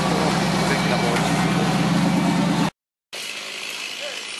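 V8 engine of a CJ-5 Jeep rock crawler running steadily at low speed, a deep even hum. It cuts off abruptly about two and a half seconds in, and after a brief silence only a much quieter outdoor background remains.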